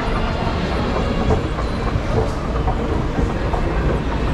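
Steady low rumble and faint clicking of a running escalator, with the general noise of a busy shopping centre behind it.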